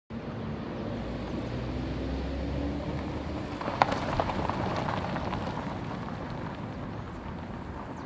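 Car driving, heard from inside the cabin: a steady low engine and road hum with a faint, slowly rising tone. About four seconds in it gives way to an outdoor street background with a sharp knock.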